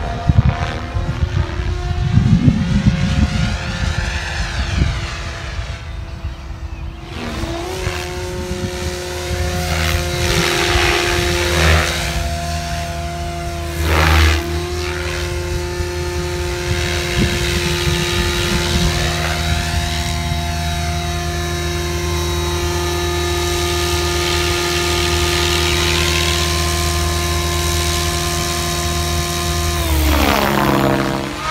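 Goblin 570 Sport electric RC helicopter in aerobatic flight: the Xnova brushless motor and SAB rotor blades give a steady buzzing whine that swells and fades as the helicopter sweeps past, with a brief dip in pitch about fourteen seconds in. A gusty wind rumble on the microphone sits under it for the first several seconds.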